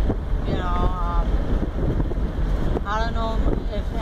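Steady road and wind rumble inside a moving car's cabin, with wind buffeting the phone's microphone. Two short voiced sounds from the driver come about a second in and near the end.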